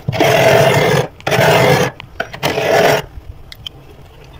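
Large metal spoon scraping thick freezer frost in three long strokes, each under a second; after the third stroke only a few faint ticks remain.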